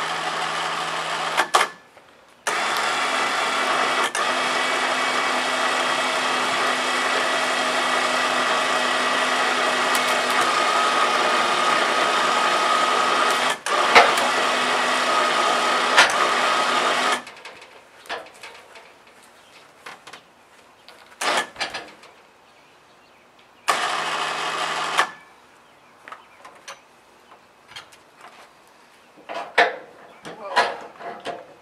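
A cheap battery-powered electric winch lifting a log on tongs, its motor running in three separate runs: a short one at the start, a long steady pull of about fifteen seconds, and another short one near the end. Small knocks from the log and tongs come between the runs.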